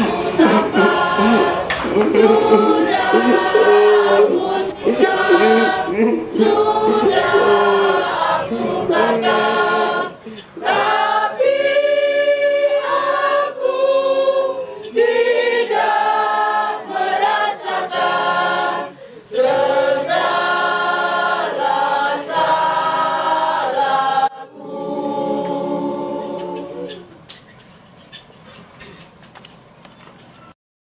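A church choir of mixed women's and men's voices sings a hymn of praise. About three-quarters of the way through the song breaks off, a quieter last phrase follows, and then only faint background hiss remains.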